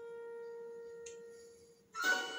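Soft background music: a single held note with faint overtones, fading out near the end.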